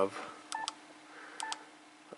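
A Yaesu FT-991A transceiver's key beep, sounding twice as a pair of short electronic beeps as its front-panel button is pressed to open the menu.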